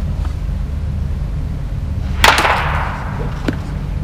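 A baseball bat hitting a soft-tossed ball once, about two seconds in: a sharp crack with a short ringing tail, over a steady low hum.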